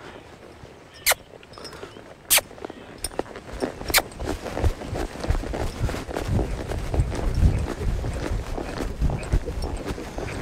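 A horse's hooves beating on a soft dirt arena, the hoofbeats starting about three seconds in and growing louder as it picks up into a lope. Three sharp clicks come before the hoofbeats build.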